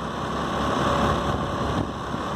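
Motorbike engine running steadily while riding at a constant speed of about 20 km/h, with wind and road noise.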